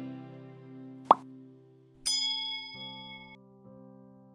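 Subscribe-animation sound effects over soft background music: a short, sharp pop about a second in, the loudest sound, then a bright bell-like ding at about two seconds that rings for over a second before cutting off.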